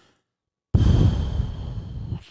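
A man's long sigh, blown out through pursed lips close to the microphone so that the breath rumbles on it. It starts sharply about three-quarters of a second in, after a short silence, and then fades.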